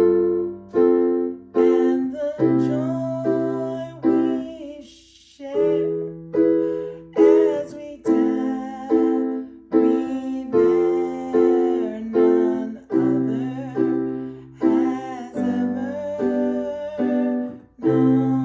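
Digital piano playing a slow, steady pattern of repeated chords, with a woman singing a wavering melody over it. The playing thins out briefly about five seconds in.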